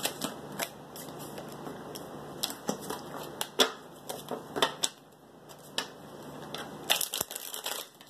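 A deck of tarot cards being shuffled and handled by hand: short papery slaps and flicks at irregular intervals, with a quick run of snaps near the end.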